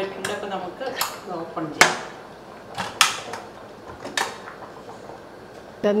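A handful of sharp clicks and knocks from a stainless steel clip-on pressure cooker's lid and valve knob being handled, the loudest about two seconds in.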